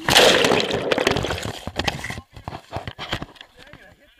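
A loud splash as a person drops from monkey bars into a pit of muddy water, with water churning right against the helmet-mounted camera for about two seconds, then fading into scattered sloshing.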